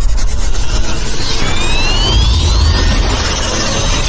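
Logo-intro music and sound effects: a heavy, steady bass rumble under a noisy wash, with a rising sweep from about a second in to about three seconds in.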